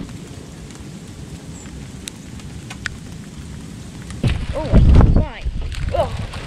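Wind and blowing snow rushing steadily over a camera microphone in a snowstorm, with a few light ticks. About four seconds in, a loud rush and thump as a clump of snow slides off the roof onto the person and the camera, and she cries out.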